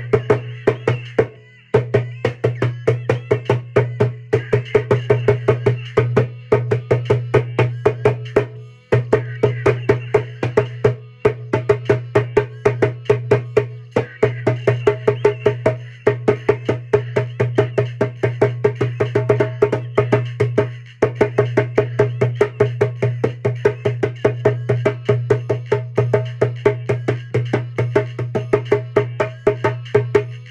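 Djembe played with bare hands: a fast, steady run of slaps and tones over a ringing bass, broken by a few brief pauses, about a second in, near nine seconds and around twenty-one seconds.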